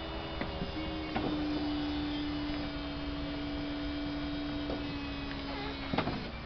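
Electro-hydraulic soft-top mechanism of a 2004 Vauxhall Astra Bertone convertible stowing the roof: the hydraulic pump runs with a steady hum that drops slightly in pitch about a second in, with a few light clicks as the roof folds. The hum stops right at the end with a knock as the rear tonneau lid closes.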